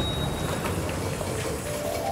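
Elevator car in motion: a steady low mechanical rumble, with music coming in near the end.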